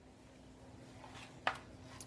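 Quiet room tone with a faint steady hum, broken by one short sharp click about one and a half seconds in.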